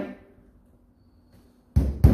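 A hammer tapping a length of coat-hanger wire down into a drilled hole in a rubber tyre ring: one sharp knock near the end, after a quiet stretch.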